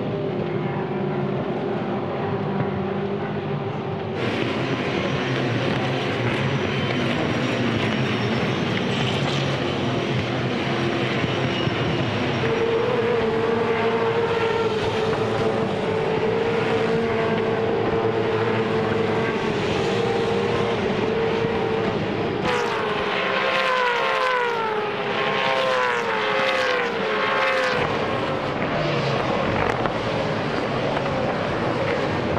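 V8 Supercars' 5.0-litre V8 engines running at racing speed as a pack of touring cars goes by, a steady engine note holding for several seconds. Near the end come several falling pitch sweeps in quick succession as cars pass one after another.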